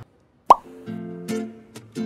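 A short, loud pop with a quick upward pitch sweep comes about half a second in, an edited-in transition sound effect. Background music of strummed acoustic guitar chords follows.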